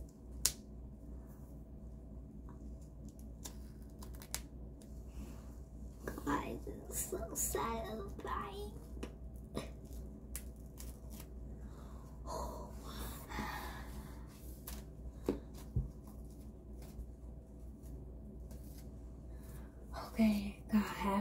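A clear peel-off face mask being slowly pulled off the skin, with faint, scattered crackles and tearing as the dried film comes away. Soft murmured vocal sounds come now and then between the crackles.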